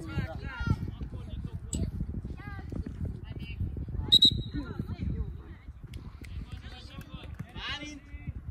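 Young players and spectators calling and shouting across a football pitch over a low rumble of wind on the microphone. About four seconds in there is a sharp referee's whistle blast that holds for about a second, the loudest sound here.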